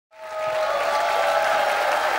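A large audience clapping, fading in at the very start.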